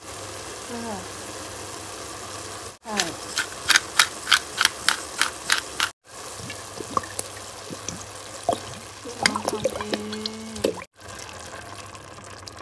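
Kitchen sounds at a steel pot of browned minced meat as seasonings go in. There is a run of about ten sharp, even taps, roughly three a second, then scattered clicks and knocks as tomato sauce is squeezed in. A low steady hum runs underneath.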